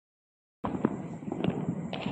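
Firecrackers going off: after a brief dead silence, a run of about five sharp cracks over a little more than a second.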